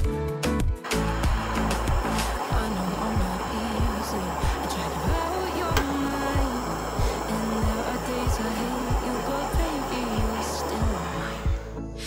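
A jeweller's soldering torch hissing steadily as it heats a solder joint on a silver chain bracelet, starting about a second in and cutting off just before the end. Background music with a steady beat plays under it.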